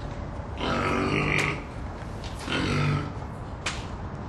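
Two guttural, voice-like grunts, each under a second long and about a second apart, over a low steady hum, with a sharp click near the end.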